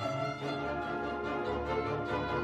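Symphony orchestra playing, with violins and other bowed strings to the fore over sustained low bass notes.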